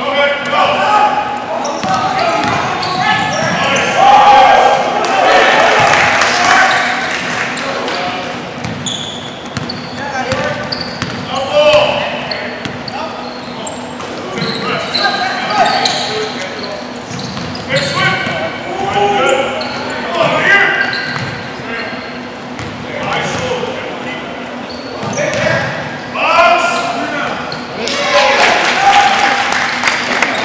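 Basketball game on a hardwood gym court: the ball bouncing on the floor amid indistinct shouts and chatter from players and onlookers, echoing through the large hall.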